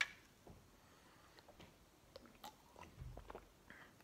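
Faint sipping and swallowing of an energy drink from an aluminium can: a few soft mouth clicks, and a low gulp about three seconds in.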